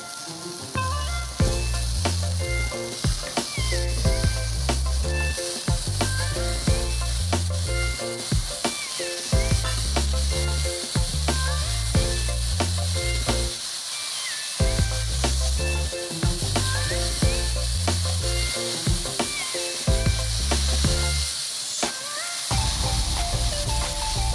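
Background music with a steady, repeating bass line, over a continuous high hiss.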